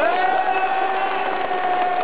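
A long, drawn-out shout from a fan in the stadium crowd, one voice held on a single pitch for over two seconds after a quick rise at the start, over a steady crowd hubbub.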